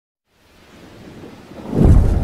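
Cinematic logo-intro sound effect: a rumbling swell rising out of silence that ends in a deep boom just before the end.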